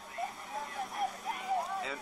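A man talking, with a faint steady hum underneath.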